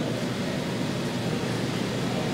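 Steady, even rushing noise with no pitch or rhythm to it, like a hiss in a broadcast feed.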